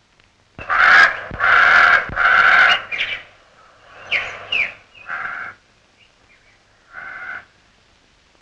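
Crow cawing: three long, loud, harsh caws in quick succession, then a few shorter, quieter calls spaced out over the following seconds.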